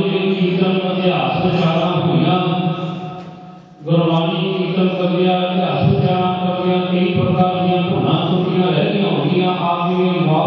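A man chanting a Sikh prayer into a microphone in a long, steady reciting tone, breaking off for a breath about three and a half seconds in and then carrying on.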